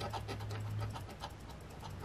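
A metal scratcher tool rubbing the coating off a lottery scratch-off ticket in quick, repeated short strokes, faint and even-paced.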